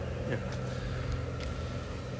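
A steady low mechanical hum, like a motor or engine running, unchanged throughout.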